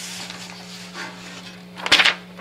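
Sheets of paper rustling and being shuffled while someone searches through printed pages, with one sharp, loud rustle just before the end. A steady low electrical hum runs underneath.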